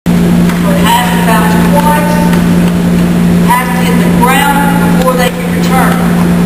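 A loud, steady low hum runs unbroken throughout, with people's voices talking over it at several points.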